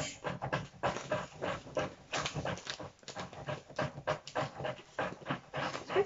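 Quick, rhythmic panting, about four breaths a second.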